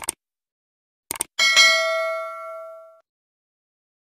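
Subscribe-button sound effect: a click right at the start, a quick double click about a second in, then a bright bell ding that rings out and fades over about a second and a half.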